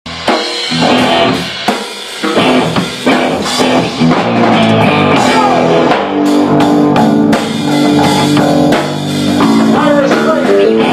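A live rock band playing: guitar and drum kit together, with frequent drum hits under sustained guitar notes.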